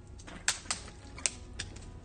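A few sharp, irregularly spaced clicks, about four in two seconds, over a low steady hum.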